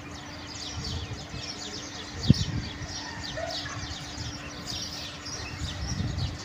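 Small birds chirping over and over, with one sharp thump about two seconds in.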